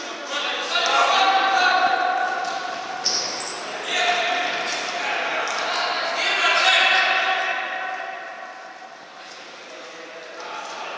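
Shouting voices of futsal players ringing through a sports hall during play, in three long spells, with thuds of the ball on the court.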